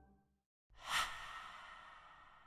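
An edited transition sound effect: a sudden rush of sound about three-quarters of a second in, peaking at once and then fading slowly, with a high ring that lingers.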